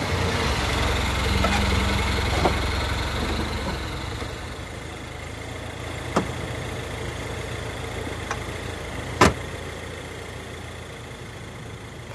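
A car engine idling with a steady low rumble, louder for the first few seconds and then settling lower. A few sharp clicks sound over it, the loudest about nine seconds in.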